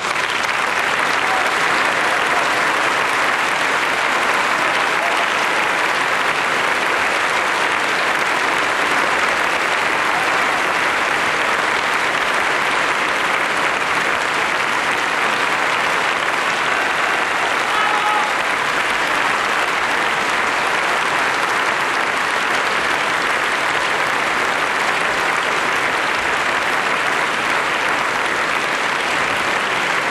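Large audience applauding steadily, a dense, even clapping that holds at one level.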